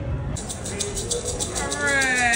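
A maraca shaken in a fast, steady rhythm. Near the end comes a high, drawn-out vocal call that rises and then falls.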